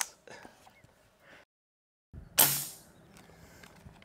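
A single shot from a .22 Umarex air rifle about two and a half seconds in: a sharp pop with a short ringing tail.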